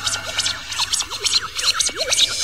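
Turntable scratching in a DJ mix: rapid short rising and falling sweeps, several a second, over a faint electronic music bed.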